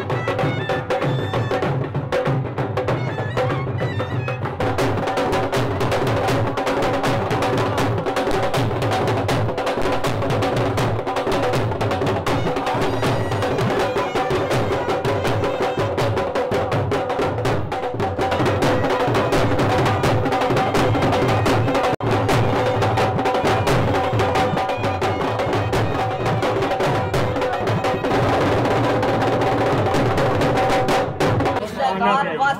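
Music led by fast, continuous drumming over a steady held drone tone, getting a little louder about two-thirds of the way through.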